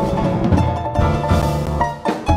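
Jazz quartet of grand piano, double bass, drums and balalaika playing an upbeat tune together, with plucked bass notes under the piano. The sound drops away right at the end.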